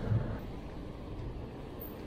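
Low, steady outdoor rumble of wind on the microphone mixed with road noise, a little louder in the first half-second.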